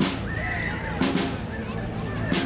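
A drum in a street procession band, struck at a slow, steady beat about once a second, with the band's sustained notes and crowd voices around it.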